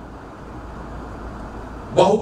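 A steady low background rumble with no distinct events, in a pause between spoken phrases.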